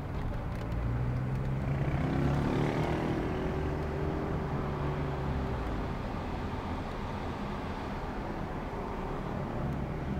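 City street traffic heard from a moving car: a steady rumble of engines and tyres. A vehicle engine's drone rises about two seconds in, holds, and fades away after about six seconds.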